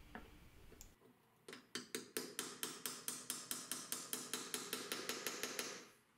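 Rapid, light, even metal taps, about seven a second, driving finishing nails through a nail set into the wooden trim strip that holds a glass pane in a bookcase door.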